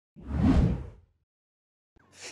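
A single whoosh transition sound effect that swells and fades out within about a second.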